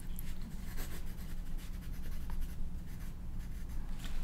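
A pencil scratching on paper on a clipboard as notes are written, in many short strokes, over a low steady hum.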